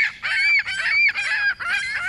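Birds calling loudly, a string of high, arched cries about two a second.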